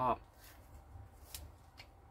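Faint rustling and about three light clicks from hands handling a plastic fashion doll and its fabric dress.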